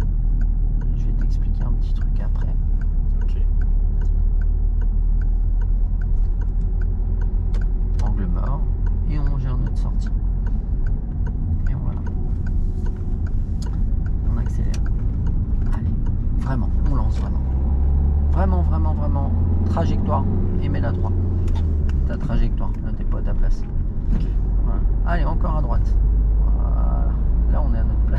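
Car engine and road rumble heard from inside the cabin as a small manual car accelerates in second gear. A deeper engine drone swells from about two-thirds of the way in and drops back shortly after. Voices break in now and then over the rumble.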